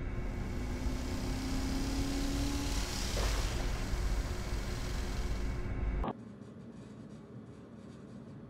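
Pickup truck engine revving up as the truck speeds past, rising in pitch over the first few seconds and loudest about three seconds in, heard through a security camera's microphone as a harsh, rumbling noise. It cuts off suddenly about six seconds in, leaving a much quieter steady background.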